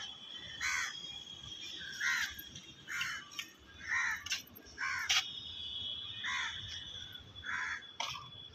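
Crows cawing repeatedly, about seven short caws roughly a second apart, over a faint steady high-pitched whine.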